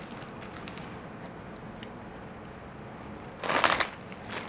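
Faint handling noise, then a short burst of plastic packaging crinkling about three and a half seconds in as a bagged packet of prototyping circuit boards is set down on a pile of plastic bags.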